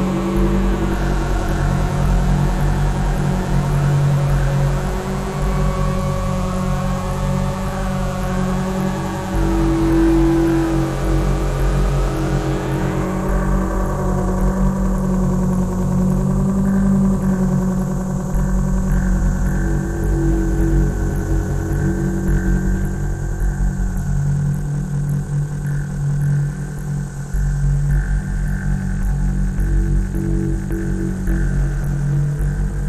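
Modular synthesizer playing layered electronic drones, with tones sliding up and down in pitch in the first half. The higher hiss drops away about halfway through, leaving low sustained tones.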